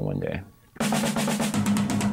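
A man's voice briefly, then, a little under a second in, rock music cuts in suddenly: a fast snare-drum roll over a held low note.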